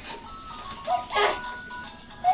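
Tinny electronic jingle from a baby Jumperoo's toy tray, thin single notes stepping in a simple melody. About a second in, the baby gives one loud short vocal outburst over it.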